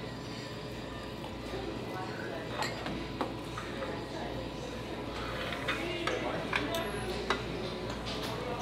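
Steel knives and forks clinking and scraping on plates as steak is cut, with a few sharp clinks from about a third of the way in, over a murmur of voices in the dining room.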